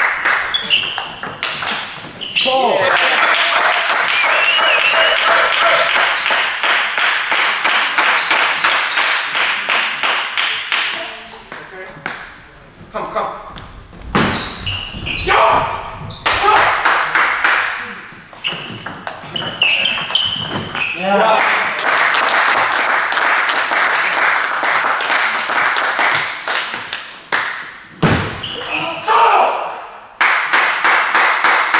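Table tennis rallies, the ball clicking off bats and table, each followed by several seconds of spectators shouting, cheering and clapping in a sports hall. One rally is near the start with crowd noise after it until about 11 s. A second rally runs from about 14 to 20 s, followed by another stretch of cheering and clapping.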